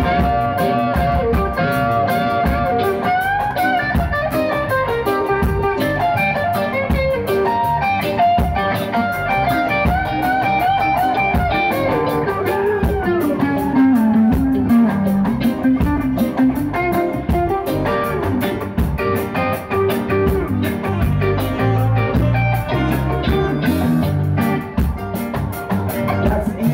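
Live reggae band playing an instrumental jam section, an electric guitar carrying a lead line with sliding, bending notes over bass and drums.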